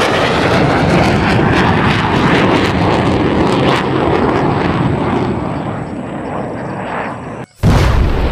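Loud aircraft engine noise, a dense rushing drone of a plane passing, easing off over the last few seconds. Near the end it cuts out for an instant and a sudden loud blast begins.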